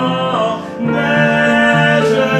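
Singing with upright piano accompaniment: held sung notes, a short dip about half a second in, then a new sustained note.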